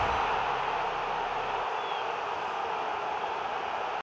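Steady TV-static hiss sound effect, easing slightly after about a second and a half.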